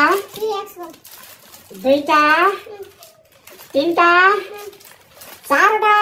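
Speech only: a high-pitched voice calls out the same drawn-out, rising exclamation four times, about every two seconds.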